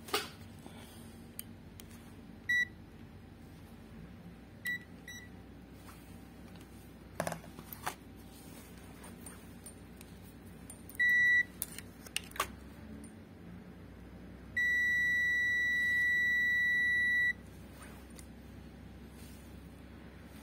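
Digital multimeter's continuity beeper sounding while the probes check connections on the underside of an amplifier board, where the audio IC has just been resoldered. Several short high beeps are followed later by one long steady beep of nearly three seconds, marking a solid connection. Light handling clicks fall between the beeps.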